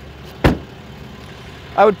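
A single solid slam about half a second in as the rear door of a Ram 3500 crew cab pickup is shut.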